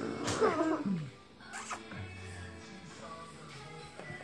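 A playful, squealing vocal call that glides down in pitch during the first second, then quieter, lower sounds.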